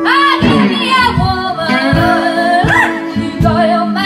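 Live blues band: a woman sings long sliding, bending notes with no clear words over the band's backing, with a steady beat underneath.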